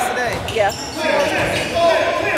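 Basketball being dribbled on a hardwood gym floor, with regular thumps about once a second, under the voices of players and spectators.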